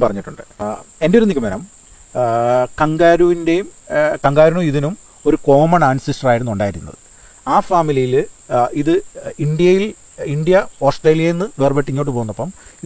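A man talking in an interview, with a steady high-pitched chirring of crickets behind his voice.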